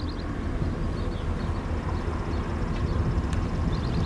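Low rumble of a car approaching on the road, growing slowly louder. A short, high, rapid trill sounds at the start and again near the end.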